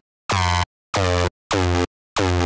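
Synth bass from Ableton's Operator synth looping a short MIDI pattern: the same rich, bright note is played three times, each note about half a second long with silence between them.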